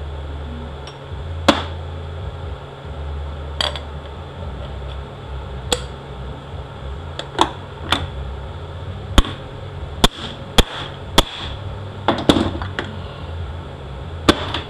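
A hammer striking a seal installer to drive a new front seal into a CD4E transaxle's aluminium case: about a dozen sharp knocks at uneven intervals, coming closer together in the second half. A steady low hum runs underneath.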